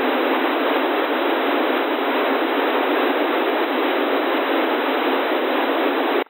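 Steady FM receiver hiss from an Airspy HF Discovery tuned to the 27.85125 MHz CB channel in narrowband FM with the squelch off: no station is transmitting, so the open receiver puts out plain noise with no bass, at an even level.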